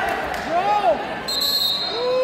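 A spectator's shout, then a referee's whistle blown once: a single steady shrill note lasting under a second, which stops the wrestling action.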